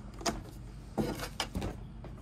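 A few short handling noises, light knocks and scrapes of the Glowforge's plastic side trim being worked loose, over a faint steady hum.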